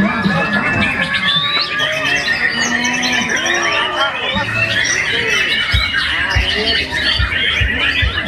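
Many caged white-rumped shamas (murai batu) singing over one another in a dense chorus of fast whistles, trills and chatter. A few dull low thumps come in the second half.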